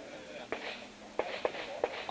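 A few short, light clicks and knocks, spaced irregularly, like handling noise from gear or the table.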